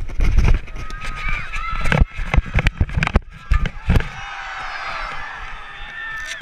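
Rumble and knocks of wind and handling on a body-worn GoPro's microphone, over a background of crowd chatter. The knocks stop about four seconds in, leaving a steadier murmur of the crowd's voices.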